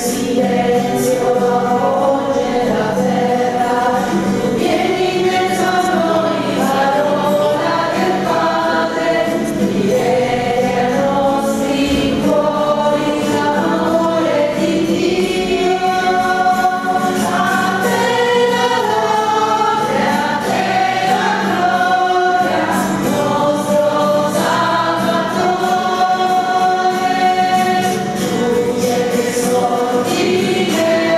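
A small church choir of men and women singing a hymn together, accompanied by guitar, with a continuous melody and no breaks.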